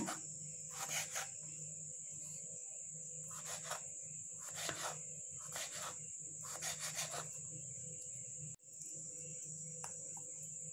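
Kitchen knife cutting raw potato slices into sticks on a wooden chopping board: about eight short, soft knocks of the blade through the potato onto the board, spaced irregularly.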